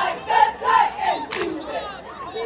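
A cheer squad shouting a cheer together, loud rhythmic syllables a few to the second, with one sharp hit about two-thirds of the way in.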